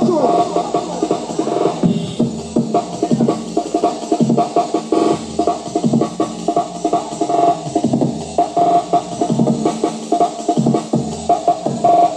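Electronic dance music from a DJ set played live on a DJ controller, with a steady, driving beat.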